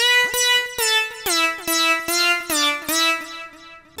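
A synth lead preset on the AIR Xpand!2 software instrument, played from a keyboard as a short phrase of repeated notes, about two to three a second, stepping down to a lower pitch after about a second and fading near the end.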